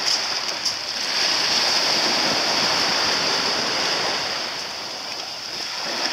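Water washing and lapping around small sailing dinghies, with wind on the microphone and a steady high hiss over it.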